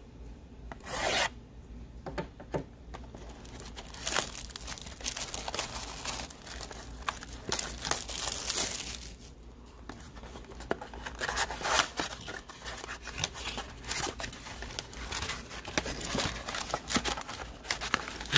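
Hands opening a cardboard trading-card box: the plastic wrap is slit and scraped away, and the cardboard lid is worked open, giving irregular scraping, rubbing and crinkling with small clicks. A short, sharp scrape comes about a second in.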